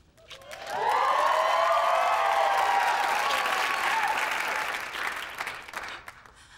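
Sitcom studio audience applauding and cheering. The sound swells up about half a second in, holds, and dies away near the end.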